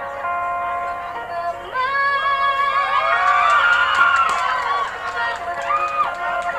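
Live concert audio: a band holding sustained chords, with a crowd of many voices, mostly women, screaming and cheering over the music for a couple of seconds in the middle.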